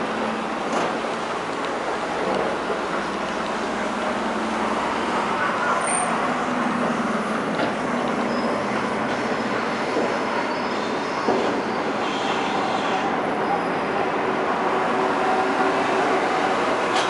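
KONE hydraulic elevator car travelling upward, giving a steady rushing, rumbling running noise with a few faint clicks.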